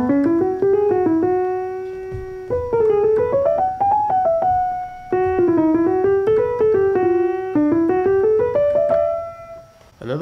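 Piano played on a keyboard in a jazzy solo with rolled notes: quick rising runs of notes that land on held tones, repeated over several phrases. It fades out near the end.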